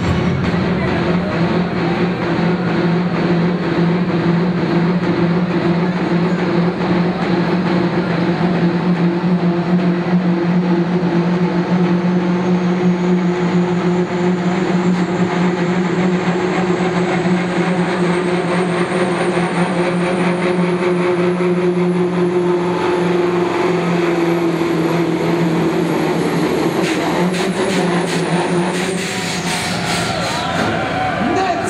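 Modified Massey Ferguson pulling tractor's turbocharged diesel engine running flat out under load as it drags the weight sled. The engine note stays steady while a high turbo whistle climbs in pitch through the middle of the pull. Near the end the whistle and the engine fall away as the sled brings the tractor to a stop.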